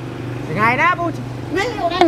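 A man speaking in short phrases during a conversation, over a steady low engine hum, as of a vehicle running nearby.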